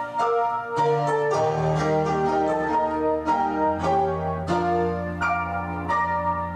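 Instrumental piano music: single struck notes in a slow melody, with a low bass note coming in about a second and a half in and held beneath.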